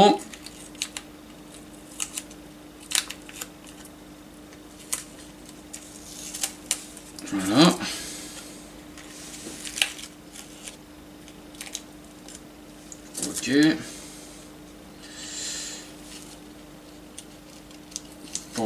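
Masking tape being peeled and crinkled off a painted plastic model part by hand, with scattered small clicks of metal tweezers and short stretches of soft rustling.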